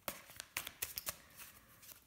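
A tarot deck being shuffled by hand: faint rustling of cards sliding over one another, with scattered light card clicks.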